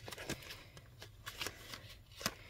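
Ring-bound cardstock ink swatch cards being flipped through by hand: a run of short, papery flicks and taps as the cards fan past one another.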